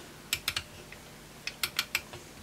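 Blue Yeti microphone's pattern-selector knob being turned through its detents: a couple of sharp clicks, then four more in quick succession near the end.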